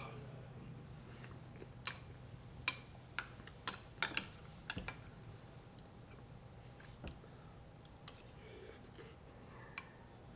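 Metal spoon clinking against a ceramic bowl while eating, a string of sharp, ringing clinks bunched between about two and five seconds in, with a few more later.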